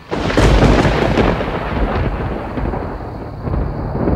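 Thunder: a sudden, loud onset that rolls on as a long low rumble and swells again near the end.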